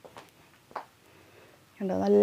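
A short pause holding a couple of faint brief sounds, then a woman starts talking again near the end.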